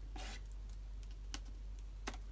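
Faint handling of craft tools on a cutting mat: a brief soft scrape near the start, then a few light clicks, over a low steady hum.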